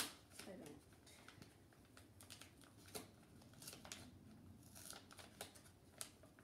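A paper card envelope being slowly and carefully torn open: faint, scattered short rips and crinkles of paper, with a sharp click right at the start.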